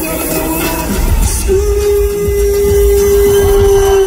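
Live concert music heard from the crowd in an arena, with heavy bass. A long held note comes in about a second and a half in, and a higher held note joins it near the end.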